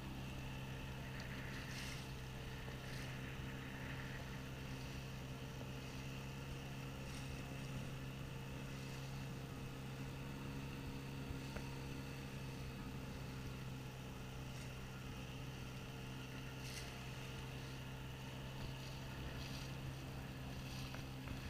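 A motorboat's engine running at a steady speed, with water rushing and splashing along the hull as the boat moves across choppy lake water.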